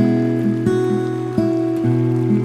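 Solo acoustic guitar playing a slow, gentle instrumental, with a new note plucked about every two-thirds of a second over a held low note.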